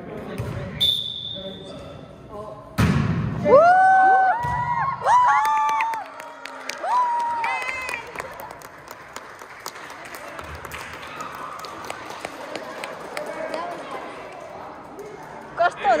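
A volleyball struck with a loud smack about three seconds in, echoing in a school gym. Several children shout and cheer for a few seconds after it, then settle into crowd chatter with a few faint ball thumps.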